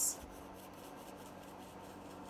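Faint soft rubbing of a wet paintbrush being stroked over a damp paper coffee filter.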